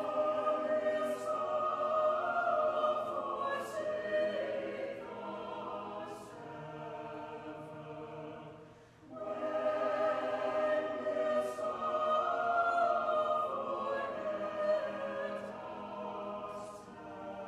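Mixed choir of men and women singing, in two long phrases with a brief pause for breath about nine seconds in.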